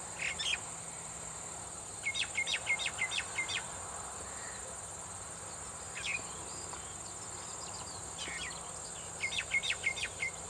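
A steady high-pitched insect chorus, with a bird calling over it in quick runs of sharp, falling chirps, twice in rapid series and a few single notes.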